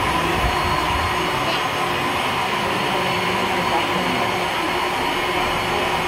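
Steady mechanical noise with a constant hum, at an even level throughout, over faint indistinct voices.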